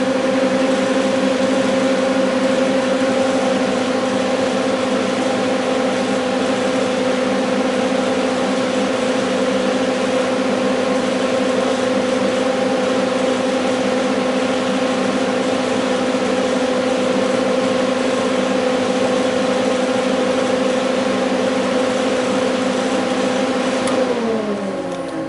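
Electric radiator cooling fan running steadily at partial speed under a PWM fan controller's cooldown timer after the ignition is switched off: a steady hum with a steady whine. The timer cuts it off at the very end.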